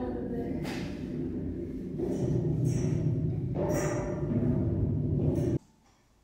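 A person's voice making long, wordless held sounds that ring with heavy echo in a tall round concrete stairwell, cutting off suddenly near the end.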